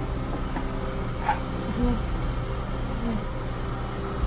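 A steady low mechanical hum, with a couple of faint light taps about half a second and a second in.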